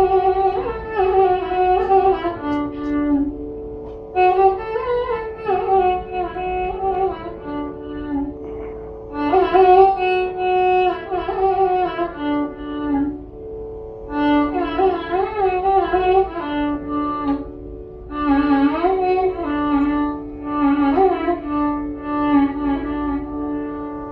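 Carnatic classical music in raga Sankarabharanam: an ornamented, gliding melodic line in phrases of three to five seconds with short pauses between them, over a steady tambura drone.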